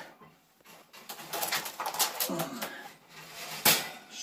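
Racing pigeons cooing in a loft, a short low coo about halfway through, amid light scuffling and clicks, with one sharp click near the end.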